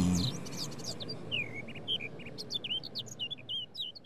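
Small birds chirping: a quick string of short, high calls, many of them sliding downward, coming faster toward the end.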